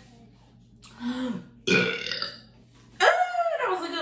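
A woman burping loudly, three burps in a row, the last one the longest and loudest, sliding down in pitch.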